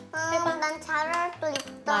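A little girl singing a short sing-song phrase in a high voice, with held notes.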